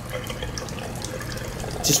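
Water running steadily from a chrome waterfall-spout bathroom faucet, a wide sheet pouring into the sink basin.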